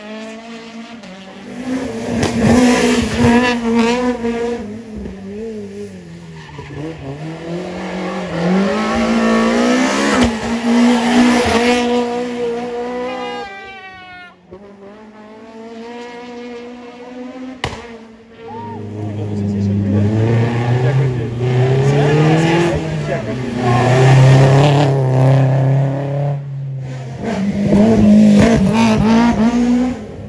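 Rally car engine revving hard and changing gear, its pitch climbing and dropping in two long runs with a brief lull between, as the car works up to and through a hairpin; tyres squeal on the bend.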